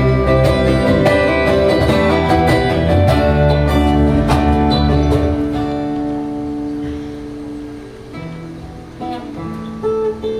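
Acoustic guitar strummed in a live band's instrumental passage; the busy strumming drops away about halfway through to quieter held notes, and the playing picks up again near the end.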